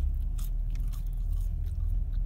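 A person chewing French fries: faint, soft crunching and mouth sounds over a steady low hum inside the car.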